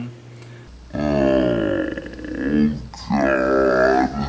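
A voice making two drawn-out groans, the first sliding down in pitch, the second shorter. They sound like an edited-in effect rather than the talk around them.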